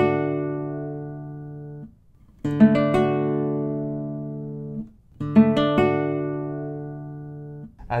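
Nylon-string classical guitar strumming a D major chord three times, each chord rolled quickly and left to ring and fade for about two seconds. The chord is played on a guitar fretted in quarter-comma meantone and, in turn, on an equal-tempered guitar. In meantone the major third D–F♯ is pure, while in equal temperament it is noticeably sharp.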